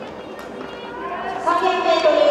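Voices shouting, rising to a loud, high-pitched, drawn-out shout from about halfway in.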